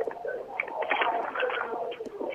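Sound coming in over a telephone line from a caller's end: a steady mid-pitched hum with garbled, muffled sounds over it and no clear words.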